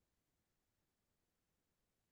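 Near silence: no sound above the faint background of the call's audio.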